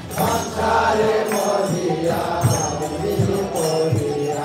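Devotional kirtan: a group of voices chanting a mantra to music, with a drum striking at uneven intervals and small hand cymbals ringing.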